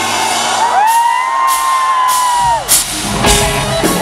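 Live heavy rock intro on a double-neck electric guitar, with a long rising-then-falling crowd whoop over it; about three seconds in the full band comes in with drum hits and distorted guitar.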